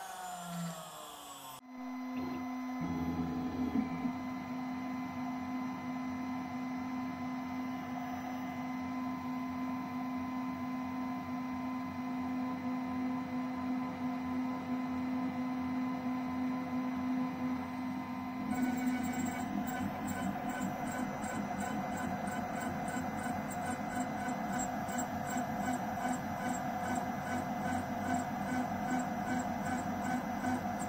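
Desktop CNC mill spindle running at steady speed with a steady hum, its end mill cutting a metal plate; from about 18 seconds in, a fast regular pulsing joins it as the cutter works the plate.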